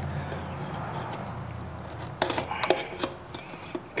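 Small metal clicks and knocks as a clutch fork and throwout bearing are slid onto a manual transmission's input-shaft bearing retainer and lined up by hand, a cluster of them in the second half. A low hum fades out in the first second.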